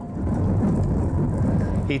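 Jet airliner taking off, heard as a steady low rumble.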